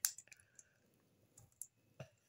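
Faint clicks of small plastic Lego pieces being pressed together, a few separate clicks with two close together about one and a half seconds in.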